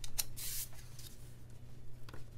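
A paper planner sticker being peeled off its backing: a couple of quick ticks, then a short rasping peel about half a second in, followed by faint paper handling as it is pressed onto the page.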